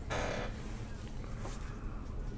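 Faint handling noise: a trading card being set down by gloved hands, with a brief soft rustle at the start and a few light ticks about a second and a half in.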